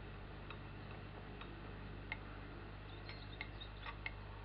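A teaspoon clinking against a glass tea cup as the tea is stirred: a handful of light, irregular clinks, over a steady low hum.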